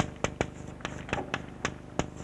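Chalk writing on a blackboard: a run of sharp, irregular taps and short strokes, about four a second, as letters are chalked by hand.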